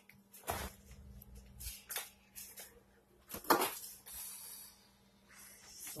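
Kitchen rummaging: scattered knocks and rustles as things are moved about while searching for a can of biscuit dough, the sharpest knock about three and a half seconds in, over a faint steady hum.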